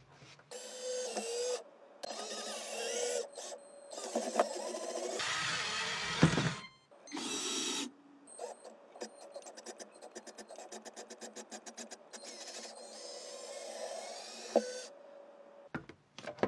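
Small electric motors of a LEGO Technic wheeled robot whining and straining in bursts that start and stop abruptly as it climbs a book, with a stretch of rapid, even clicking from its drivetrain partway through.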